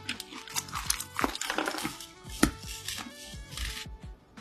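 Close-miked eating sounds of someone chewing raw seafood: a quick, irregular series of sharp mouth clicks and smacks. Background music plays underneath.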